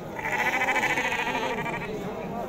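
A sheep bleating once, a long quavering bleat of about a second and a half that begins just after the start, with the murmur of a crowd behind it.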